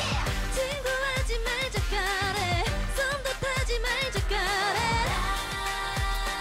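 K-pop girl-group dance-pop song: female vocals over a steady drum beat, ending on a held note.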